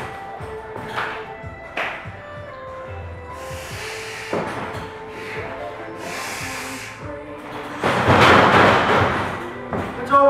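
Music plays throughout, with a few dull thuds from wrestlers grappling on the ring canvas. Near the end comes the loudest sound, a noisy stretch of about two seconds as the two wrestlers go down onto the mat.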